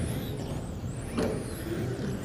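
Several 1/10 electric RC touring cars running on a carpet track, their modified-class brushless motors whining high and sweeping up and down in pitch as they accelerate and brake, over a steady background of tyre and hall noise. A sharp tap stands out about a second in.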